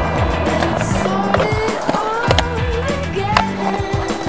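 Skateboard wheels rolling on concrete with a few sharp clacks of the board, over background music with a steady bass line.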